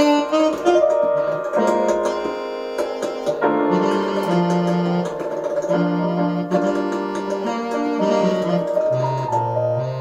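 Electronic keyboard playing a piano-voiced jazz piece, with chords and melody notes changing every half second or so and low bass notes coming in near the end.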